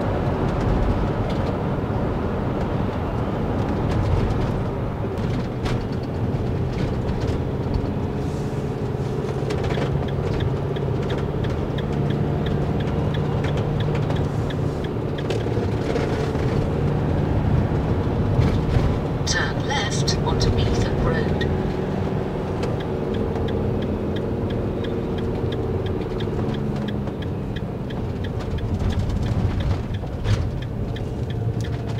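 Motorhome cabin on the move: steady engine drone and road rumble from tyres on a wet road, with a faint regular ticking through the second half.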